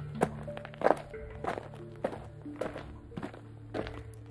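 Small plastic Littlest Pet Shop figurine tapped down on a flat surface over and over, about one tap every half second or so, as it is hopped along like footsteps. Background music with held notes plays underneath.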